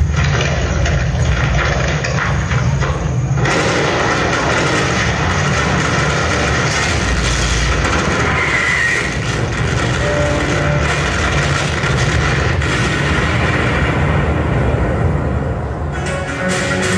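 A war film's base-camp attack sequence played loud over an auditorium's speakers: a continuous, dense rumbling mix of score and battle effects. About three and a half seconds in it suddenly turns harsher and fuller, with a hissing wash over the rumble that thins out near the end.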